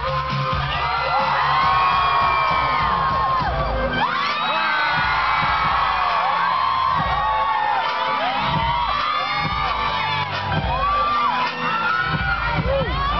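Dance music playing over stage loudspeakers, with a crowd whooping and cheering over it. From about four seconds in, many shrill yells overlap one another.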